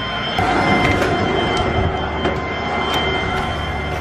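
Sludge-laden water rushing out of an aquaponics bead filter's quick-release drain in a steady flow, as the filter is purged of its built-up sludge.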